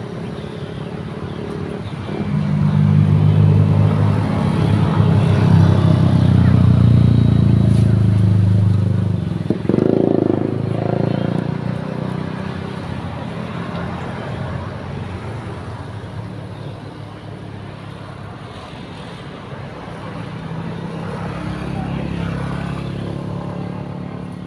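A motor vehicle's engine running nearby: a steady low hum that swells about two seconds in and fades away after about ten seconds. A second, fainter vehicle is heard near the end.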